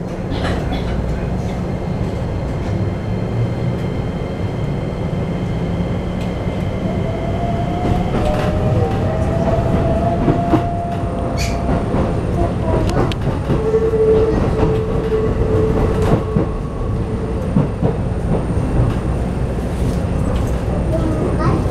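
Keikyu New 1000 series electric train heard from inside the passenger car while running: a steady rumble of wheels on track with occasional rail clicks, and the whine of its Toyo IGBT-VVVF inverter and traction motors, a tone that rises in pitch about halfway through, then a steadier lower tone a little later.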